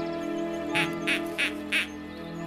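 Light-show soundtrack music with held tones, with four short, loud sound-effect calls in quick succession around the middle, each about a third of a second apart.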